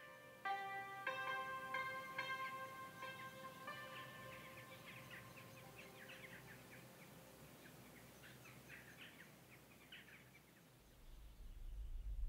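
Slow single notes on an Iranian string instrument ring out and fade away over the first few seconds. Faint chirping from a flock of birds follows, and a low hum comes up near the end.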